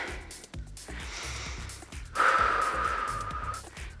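A woman's deep breath during exercise: a faint inhale about a second in, then a long exhale from about two seconds in until near the end, over background music with a low beat.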